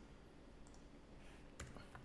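A few faint computer keyboard clicks over near-silent room tone.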